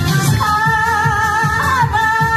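A woman singing into a microphone over an amplified disco backing track with a steady beat. She holds one long note with vibrato from about half a second in, sliding off it near the end.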